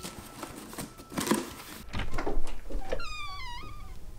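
Rustling and knocks, with a low rumble setting in about halfway. Near the end a cat meows once, a wavering call that falls in pitch.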